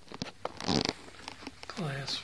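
A voice in a small room, with scattered clicks and a short rasping noise about three quarters of a second in; the voice begins near the end.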